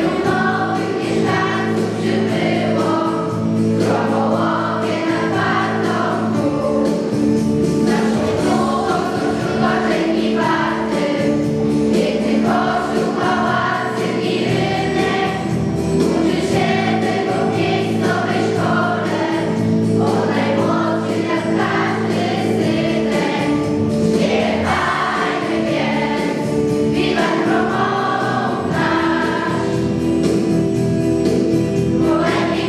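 A children's school choir singing a song over a sustained instrumental accompaniment.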